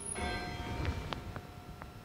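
A bell struck once, its tone ringing on and dying away, marking the elevation of the consecrated host and chalice; a few light knocks follow in the second half.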